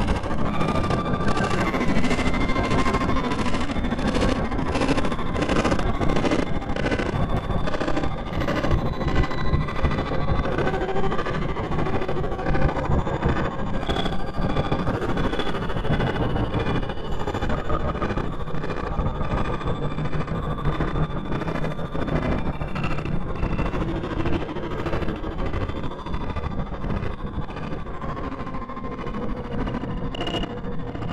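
Dark ambient horror music: a dense, rumbling noise drone with faint sustained tones running through it, easing slightly toward the end.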